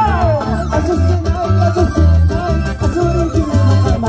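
Live band music through a loud PA, with a pounding bass beat, guitar and drums. A melody line slides down in pitch right at the start.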